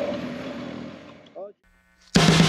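BMW R1250GS boxer-twin engine and wind noise on a moving motorcycle, fading away steadily over about a second and a half, with a brief warbling tone just before it cuts to silence.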